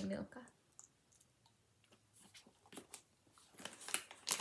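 Faint chewing and small mouth clicks as two people eat pieces of a slightly melted Milka Oreo chocolate bar, with a few scattered ticks.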